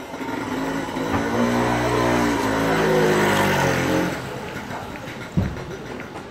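A motorbike engine passing close by, growing louder over the first two seconds and fading out after about four seconds, its pitch shifting as it goes past. A short thump about five seconds in.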